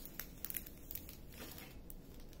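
Faint, scattered crinkling and light ticks of a plastic-covered diamond painting canvas being handled.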